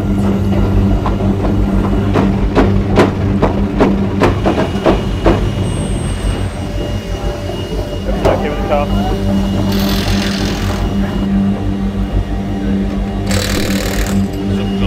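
Busy racing-grid ambience: background voices and a run of sharp clicks over a steady low hum, with two short bursts of hiss near the end.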